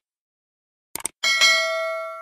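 Subscribe-button animation sound effect: a quick mouse click about a second in, then a single bell ding that rings on and slowly fades.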